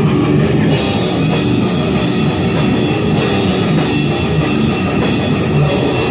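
Band rehearsal of heavy metal: distorted electric guitar and drum kit playing loud. Under a second in, the sound brightens sharply as the full kit with cymbals comes in.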